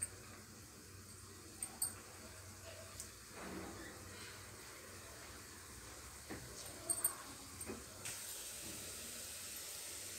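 Chegodilu dough rings deep-frying in hot oil in a pan: a quiet, steady sizzle with a few small crackles. The sizzle grows fuller about eight seconds in.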